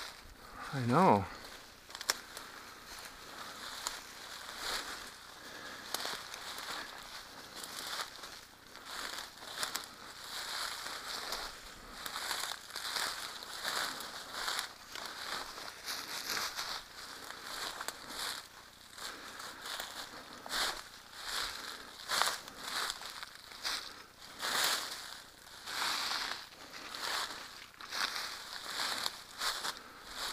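Footsteps crunching and brush rustling as a hiker pushes downhill through dense undergrowth, in an uneven run of crackling steps. About a second in, a short, loud voice-like sound slides down in pitch.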